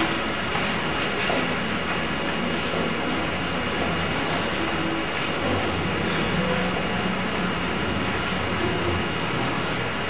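Steady rushing room noise with a low hum, flat throughout, with no distinct events.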